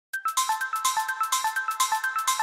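Intro music: a quick repeating melody of short high notes, about eight a second.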